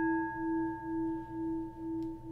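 Struck singing bowl ringing on. Its tone pulses in a slow wavering beat about twice a second as it slowly fades.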